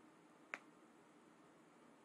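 Near silence with one short, sharp click about half a second in.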